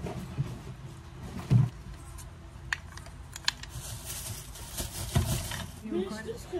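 Scattered knocks and clicks of things being handled and set down. The loudest is a dull thump about one and a half seconds in, with a couple of sharp clicks near the middle and another thump near the end.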